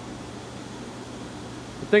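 Steady hiss with a low hum from a hydrogen-oxygen gas rig running, air and gas blowing through the lines and out of the unlit torch to purge the air from the system.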